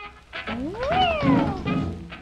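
A dachshund gives one drawn-out whining howl that rises in pitch and then falls away, lasting about a second.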